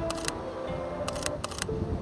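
Camera shutter firing in two quick bursts of about four shots each, about a second apart, over background music.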